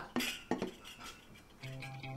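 Two light clinks of cutlery against dishes at a dinner table, then soft music comes in near the end.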